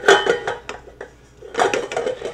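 Stainless steel mixing bowl clanking and ringing as it is handled on a stand mixer with a spatula in it. There are two bursts of metallic clatter, one at the start and one near the end.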